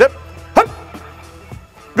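Quiet background music with a steady low tone, broken about half a second in by one short sharp sound as a player hits the padded arm of a TEK football sled.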